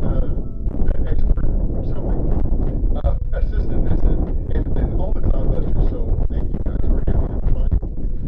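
Wind buffeting the microphone, with indistinct talking voices over it.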